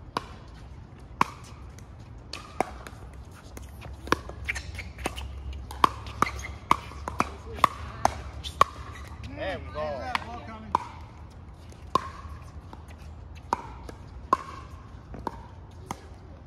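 Pickleball paddles hitting a hollow plastic ball: sharp, ringing pock hits, a few scattered ones at first, then a quick exchange of about two hits a second from about four to nine seconds in, then scattered hits again.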